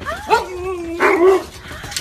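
Huskies vocalizing excitedly: drawn-out, wavering whine-like calls that glide up in pitch, with a louder, rougher call about a second in.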